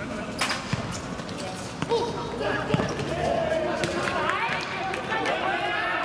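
A football kicked and bouncing on a hard outdoor court: a few sharp thuds in the first three seconds, the loudest near three seconds in. Players' voices shouting and calling follow.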